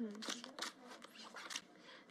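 Playing cards drawn from a dealing shoe and flipped onto a felt baccarat table: a string of short, soft card slides and slaps.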